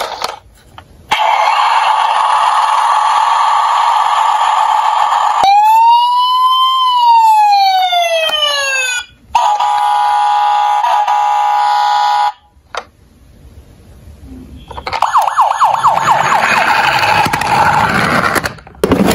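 Toy fire engine's electronic sound effects played through its small speaker: a buzzy electronic sound, then a siren that rises and falls once, then a steady horn-like blare. After a short pause there is a noisy rattling sound near the end.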